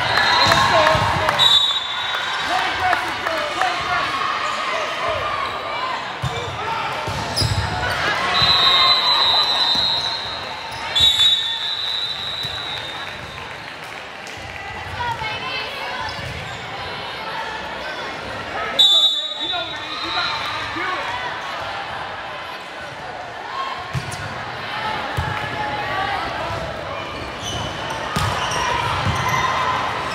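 Volleyball match in a gym: a steady, echoing murmur of player and crowd voices, with sharp ball hits, the loudest about eleven and nineteen seconds in. Several short, high, steady referee whistle blasts sound at the start, in the middle and near the end, marking rallies and serves.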